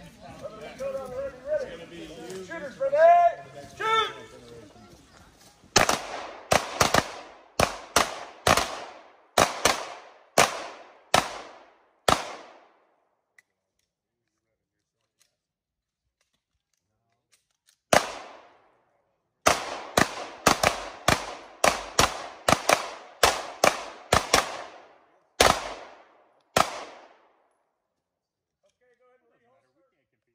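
Handgun shots in two rapid strings: about a dozen shots at roughly two a second, a pause of several seconds, then a second string of about a dozen. Voices are heard in the first few seconds.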